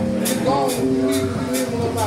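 Live band playing an instrumental piece: keyboard notes and bass over drums, with cymbal strokes about twice a second.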